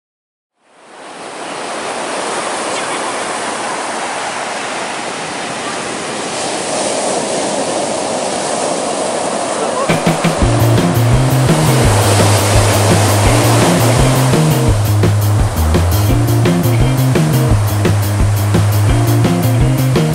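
Ocean surf breaking on the shore, a steady rush that fades in about a second in. About halfway through, background music with a bass line and a steady drum beat comes in over the surf and is louder than it.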